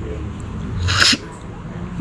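A person sucking hard at the open end of a cooked sea snail shell to draw the meat out: one brief hissing slurp about halfway through.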